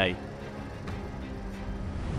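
Outdoor street ambience: a steady rumble with a faint low hum, growing slowly louder toward the end.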